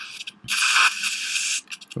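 Dental chairside equipment hissing steadily for about a second, with a soft click just before it.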